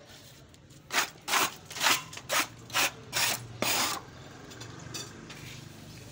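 Quick back-and-forth scraping strokes of a hand tool, about seven in three seconds, stopping about four seconds in.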